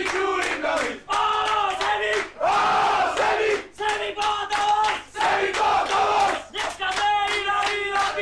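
A group of men chanting together in a loud, celebratory chant, each held phrase breaking off about once a second, with hands clapping along.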